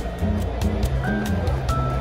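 Background music with a steady beat over a bass line.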